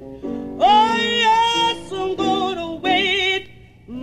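A recorded song: a singer holding long notes with vibrato over instrumental accompaniment, the phrases separated by short breaks.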